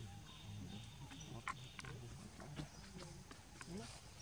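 Faint outdoor ambience with low, indistinct voices in the background and a few short soft clicks.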